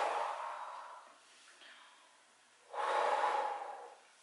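A woman taking two deep, calming "woosah" breaths: the first blown out through pursed lips and fading over about a second, the second coming about three seconds in.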